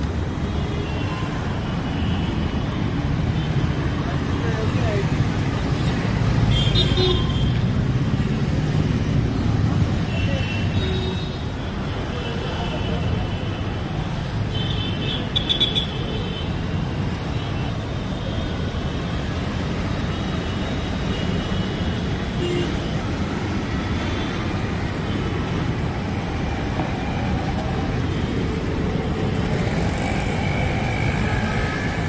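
City street traffic: a steady rumble of passing cars and auto-rickshaws, with short horn toots about seven and fifteen seconds in.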